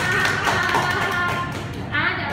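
Live keyboard music with a child's voice over it.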